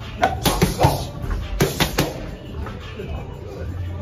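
Boxing gloves striking focus mitts in quick combinations: about seven sharp smacks in the first two seconds, then quieter.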